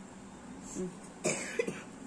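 A person coughs, a short rough burst about a second and a quarter in, with a brief low throat sound just before it.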